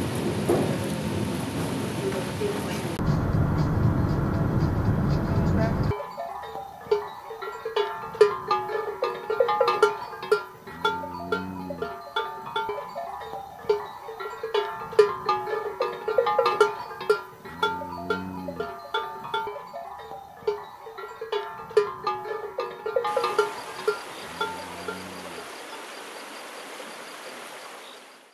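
Bells on grazing cows clanking irregularly, with a few low moos in between. Before them a steady rushing noise, and the same kind of rushing returns near the end.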